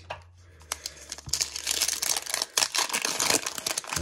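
Foil wrapper of a trading-card pack crinkling as it is torn open: a dense run of crackles starting about a second in.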